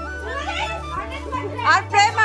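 Background music ending about halfway through, under lively, high-pitched chatter of girls' voices that grows louder toward the end.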